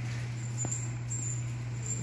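Steady low hum of room background noise, with a single faint click a little over half a second in.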